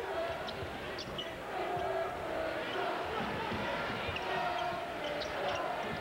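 Arena game sound of a college basketball game: the steady noise of a large crowd, with a basketball bouncing on the hardwood court and a few short squeaks.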